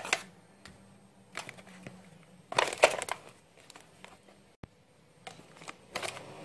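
Ration packets and foil-sealed food trays being handled and packed into a cardboard box: irregular rustling and crinkling of packaging, loudest in a burst about halfway through.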